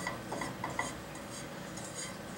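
Fingers pushing crumbly tinder shavings around a small nonstick frying pan, giving a few light clicks and taps against the pan in the first second, then only a faint steady background.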